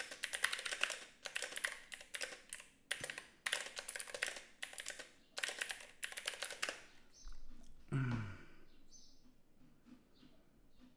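Typing on a computer keyboard: fast runs of keystrokes in bursts with short pauses, stopping about seven seconds in. Around eight seconds a brief low sound falls in pitch.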